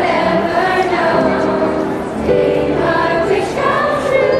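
Middle school chorus singing together in held notes, with a brief break a little after halfway before the next phrase starts.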